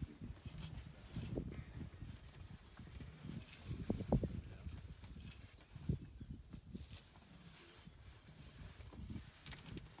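Cheetah feeding on a carcass: irregular low chewing, crunching and tearing sounds, loudest about four seconds in and again near six seconds.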